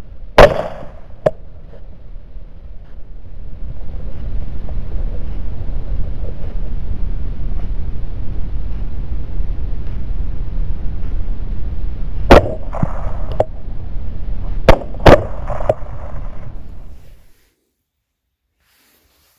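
Rifle shots fired at hogs through a thermal scope. One sharp shot comes about half a second in; after a long stretch of steady low rumbling, three more follow, one about twelve seconds in and two close together near fifteen seconds. The sound cuts off abruptly shortly before the end.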